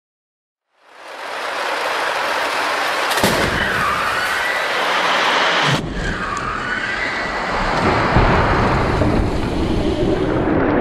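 Crash sound effects: a loud rush of rumbling noise fades in about a second in and holds, with a sharp crack about three seconds in and another near six seconds.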